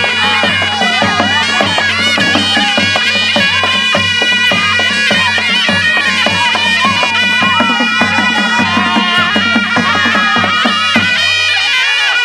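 Nepali panche baja wedding band playing: a shehnai's reedy, wavering melody over a steady drone and a regular drum beat.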